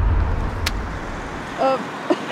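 Low rumble of road traffic, a car going by, which fades out after about a second and a half. A single sharp click comes about two-thirds of a second in, and a brief snatch of a voice near the end.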